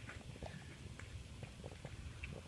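Faint, irregular footsteps on dirt, with scattered small clicks and a steady low rumble underneath.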